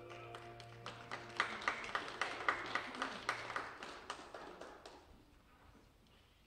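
A congregation applauding a sung solo: the clapping builds from about a second in, is fullest through the middle and dies away near the end, while the last held chord of the accompaniment fades out under it.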